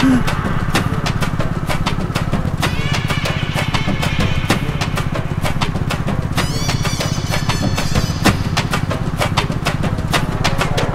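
Motorcycle engines running as the bikes ride along, a steady rapid low pulse throughout with many sharp clicks over it. A brief higher tone sounds about three seconds in and again near the middle.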